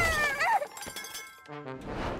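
Cartoon crash sound effects: clinking, crumbling debris after a character smashes into a wall, followed about a second and a half in by a short musical sting for a scene change.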